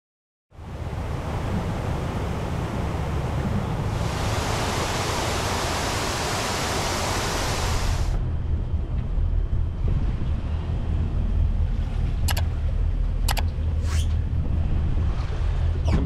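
A 2005 Monterey 302 cruiser under way: a steady low engine rumble under a loud rush of wind on the microphone, the wind rush dropping away about halfway through. Three sharp clicks near the end.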